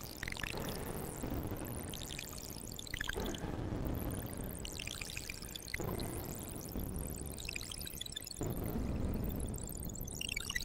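Make Noise 0-Coast synthesizer playing a sci-fi 'bleep bloop' patch: clusters of quick, bubbly blips that slide up and down in pitch over a low noisy rumble, changing every few seconds. It runs through an octave-up and octave-down harmonizer, hall reverb and a reverse delay.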